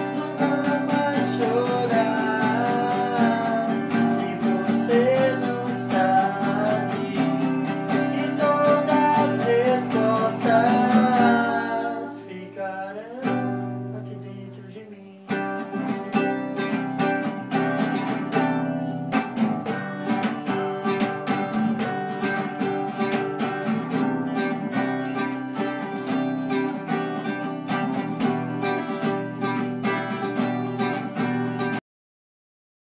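Acoustic guitars playing together: strummed chords under a wavering melody line. About twelve seconds in the playing fades to a single chord ringing down, then starts again abruptly about fifteen seconds in with steady, even strumming.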